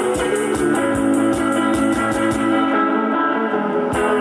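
Electric guitar playing an instrumental passage of a rock song over a steady beat. The beat thins out briefly about three seconds in and comes back at the end.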